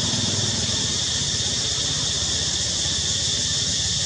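Steady outdoor background noise: a continuous high hiss over a low rumble, with no distinct event standing out.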